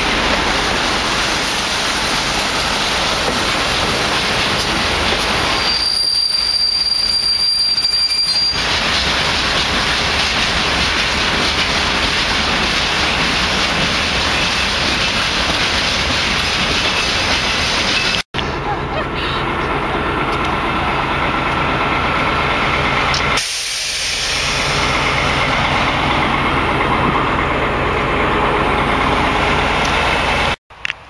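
Railway wagons rolling past close by, a steady loud rumble and rush of wheels on rail, with a brief high wheel squeal a few seconds in.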